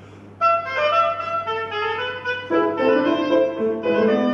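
Clarinet and piano playing a classical piece. After a brief rest, the clarinet comes in loudly about half a second in with a melody. Lower piano notes join underneath about two and a half seconds in.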